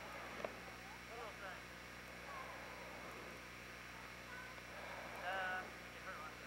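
Faint distant voices calling out over a steady low hum, with one louder, high-pitched call near the end and a single sharp click about half a second in.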